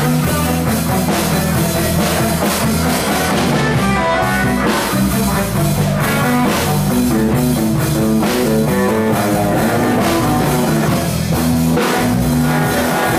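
A live rock band playing loudly and steadily, with guitar and drum kit.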